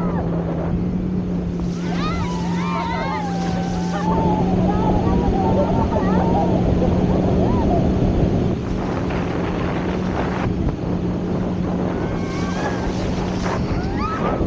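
Towing motorboat's engine running with a steady low hum under the rush of water and wind on the microphone as an inflatable banana boat is pulled across the sea. The riders cry out and laugh excitedly about two seconds in and again near the end.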